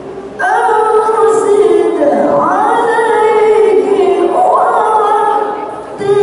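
A woman's melodic Quran recitation (tilawah), sung into a handheld microphone. She comes in about half a second in with long held, ornamented notes that glide upward twice, then breaks briefly for breath near the end.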